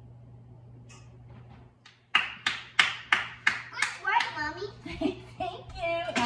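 Hands clapping: about six sharp, even claps starting about two seconds in, roughly three a second, followed by excited voices.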